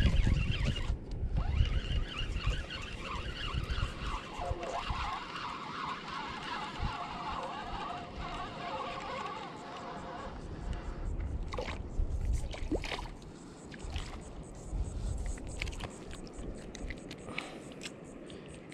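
Spinning reel being cranked to retrieve line with a hooked fish, a steady whirr of the reel's gears that stops about ten seconds in. Wind rumbles on the microphone near the start, and a few clicks and splashes follow as the fish is brought in.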